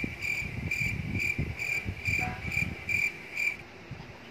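Evenly repeated high chirps at a steady pitch, about two to three a second, like an insect's call, stopping shortly before the end; soft low rustling beneath.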